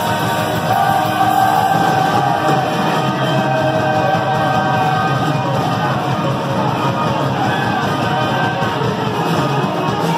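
Live rock band playing amplified guitars and a drum kit, with sung vocals over the top, loud and unbroken.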